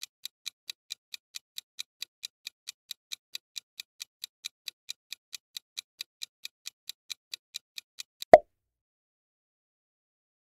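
Countdown-timer clock ticking sound effect, about three even ticks a second, cut off about eight seconds in by a single short, loud sound effect.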